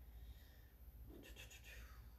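Near silence: room tone, with one faint, brief rustle a little over a second in.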